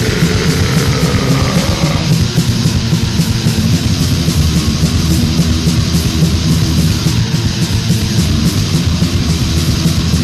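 Death/doom metal from a 1990 Swedish demo recording: heavily distorted electric guitars over steady drumming, playing continuously.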